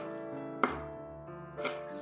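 Chef's knife chopping dried chili peppers on a wooden cutting board: two knocks of the blade on the board, a sharp one about half a second in and a softer one near the end, over steady background music.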